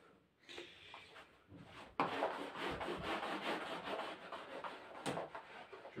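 Hand rubbing and wiping across a woven rug to clear bread crumbs, a steady scratchy rustle that starts about two seconds in, with a small click near the end.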